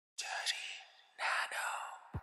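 A voice whispering two short breathy phrases, the second starting about a second in.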